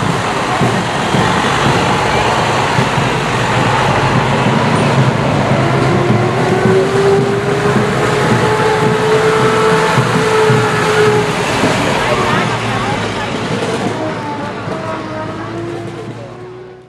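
Fire trucks driving slowly past with their engines running, amid crowd noise. About six seconds in a long, steady tone sounds for about five seconds, rising slightly at first. The sound fades away at the very end.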